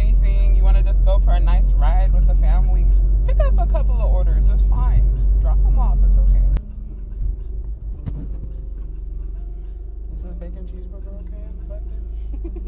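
A voice singing a wavering melody over a deep rumble, which cuts off abruptly about six and a half seconds in. After that only the steady low road noise of a car cabin remains, with faint voices.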